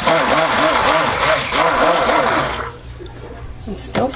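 Stick blender mixing colorant into raw soap batter in a small plastic measuring cup: a churning, liquid whirr that starts suddenly and wavers in pitch several times a second, stopping after about two and a half seconds.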